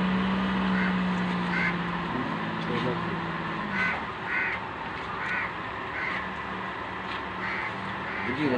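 Birds giving about seven short calls at irregular intervals, over a steady low hum that drops out for a couple of seconds midway.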